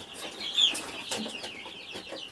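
Birds chirping steadily in the background: many short, high chirps overlapping. A few faint clicks come as dry beans are set down on a paper-towel-covered plastic tray.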